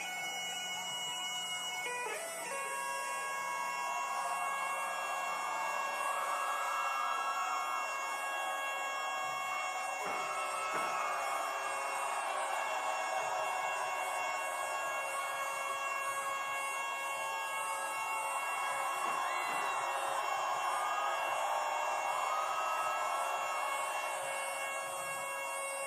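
Great Highland bagpipes played solo: steady drones under a chanter melody that bends and slides, with crowd noise beneath.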